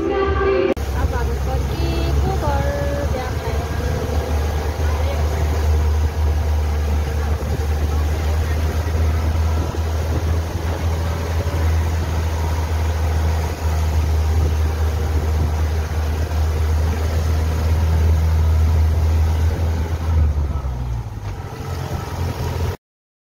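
Steady low rumble of a motor vehicle driving, heard from inside at an open side window. Music cuts off in the first second, and the rumble fades out near the end.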